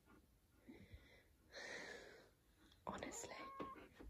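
Near silence, broken by soft whispering and breathy sounds, with a brief thin high tone about three seconds in.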